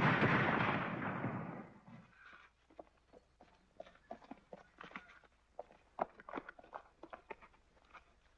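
A single shotgun blast at the start, its boom dying away over about two seconds. Faint scattered footsteps and scuffs on dirt follow.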